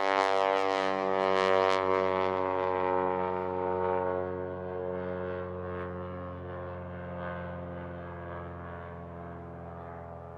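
Single-engine light propeller plane climbing away after takeoff, its steady engine and propeller drone fading as it recedes; the higher hiss drops away in the first few seconds.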